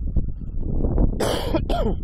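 A man coughs twice in quick succession, two short harsh coughs about halfway through, over a steady low rumble of wind on the microphone.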